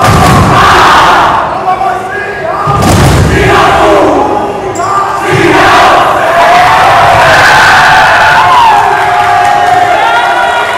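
A team of boys shouting a huddle chant together, many voices yelling at once, loud throughout, with a few dull thuds about 3 and 5 seconds in.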